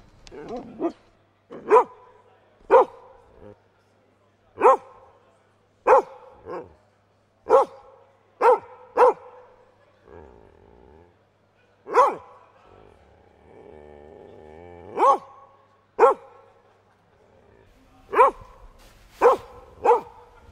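Short dog barks, one or two at a time, about a dozen spread through the stretch, standing in for the costumed dog character's speech.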